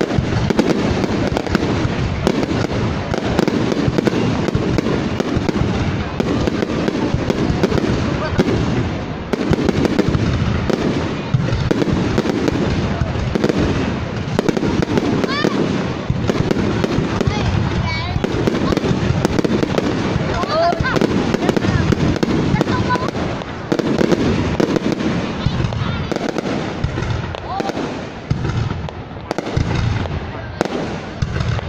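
Aerial fireworks display, with shells launching and bursting overhead in a dense, continuous run of bangs and crackles.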